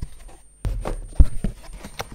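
Small corrugated cardboard mailer box being handled and opened: hollow knocks and scraping of cardboard flaps, with the sharpest knock just past a second in.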